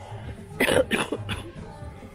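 A person coughing: a loud first cough about half a second in, followed by two shorter coughs.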